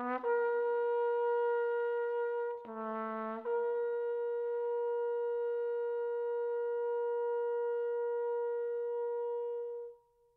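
Flugelhorn holding one long, steady high note. A lower tone sounds against it briefly just after the start and again about three seconds in. The note then stops abruptly.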